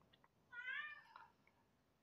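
A pet cat meowing once, a short faint call about half a second in that bends in pitch and trails off.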